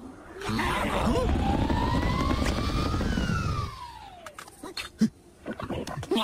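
Cartoon sound effects: a loud rushing rumble lasting about three seconds with a tone rising through it, ending in a falling whistle-like glide, then a sharp knock about five seconds in.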